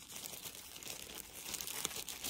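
Plastic packaging crinkling as it is handled, a quiet run of fine crackles.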